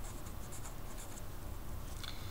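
Sharpie marker writing on paper: a few short scratchy strokes of the felt tip as an arrow and a label are drawn.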